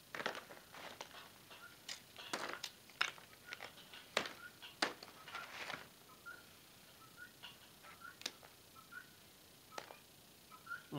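Lumps of baked bituminous coal and coke clicking and crunching against each other as hands sort through them on a paper sheet, with some paper crinkling. The clicks come thick in the first six seconds and thin out after.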